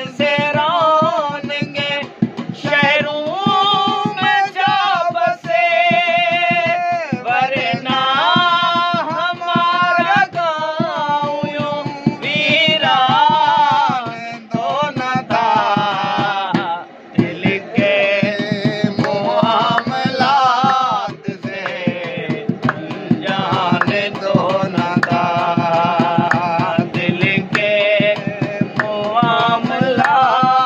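A man singing an old Urdu ghazal in a folk style with a wavering, ornamented voice, accompanied by fast hand drumming on a round steel vessel used as a drum.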